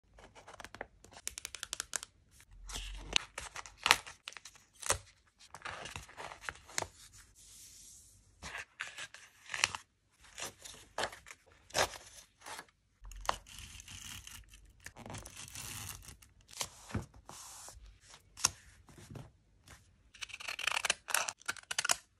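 Close-up paper handling: journal pages and sheets of patterned scrapbook paper are rustled, tapped and slid into place, with many sharp clicks and short crinkles. Near the end there is a longer burst as decorative-edge craft scissors cut through a printed photo.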